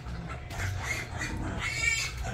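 Faint calls of farm animals: a few short, high cries over a low steady background.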